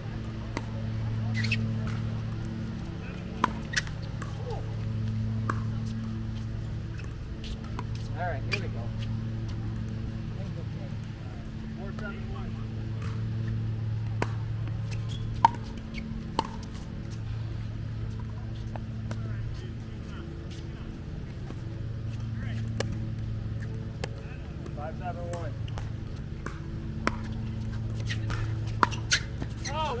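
Pickleball rally: sharp, short pops of paddles striking a plastic pickleball at irregular intervals, a few seconds apart, the loudest about halfway through. Under them runs a steady low hum that swells and fades every few seconds.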